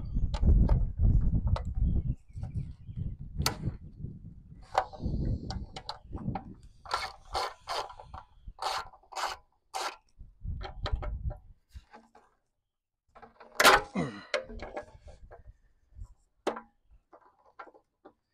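Socket ratchet working the bolts of a motorcycle fuel pump retaining plate, with hand and tool noise on the steel tank: a rubbing, rasping scrape at first, then a series of separate clicks and scrapes. A louder, sharp sound with a falling pitch comes about two-thirds of the way in.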